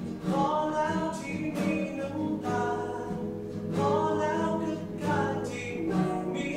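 A female voice singing a Thai pop ballad in long phrases, accompanied by a strummed nylon-string classical guitar.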